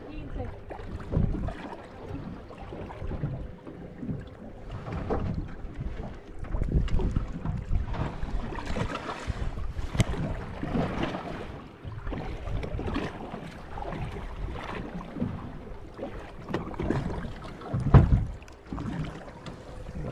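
Wind buffeting the microphone in gusts, with sea water lapping against a small boat's hull. A sharp click about halfway through and a thump near the end.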